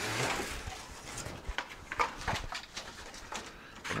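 Cardboard box and packing rustling, with scattered light knocks, as a long string-trimmer shaft is pulled out of it.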